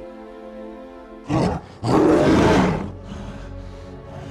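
A giant gorilla's roar, a film creature sound effect: a short burst about a second in, then a loud roar lasting about a second, over a sustained chord of film score music.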